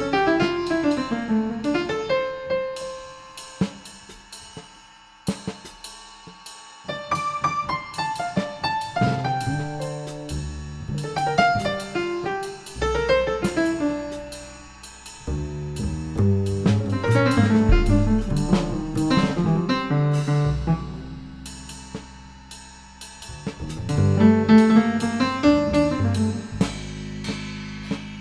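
Improvised jazz trio: upright piano, plucked double bass and drum kit with cymbals playing together, the music swelling and easing in intensity several times.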